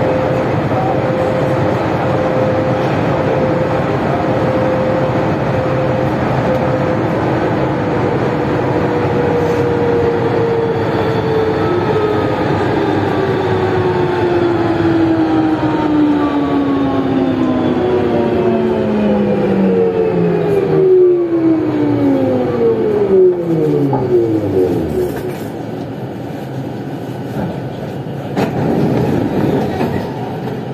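Siemens VAL 208 NG rubber-tyred metro train running through a tunnel, heard from on board, with a steady rolling rumble. From about a quarter of the way in, its electric motor whine falls steadily in pitch as the train slows, dying away about 25 seconds in, after which the running noise is quieter.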